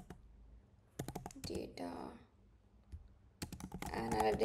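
Typing on a computer keyboard: two short runs of key clicks, about a second in and again near the end.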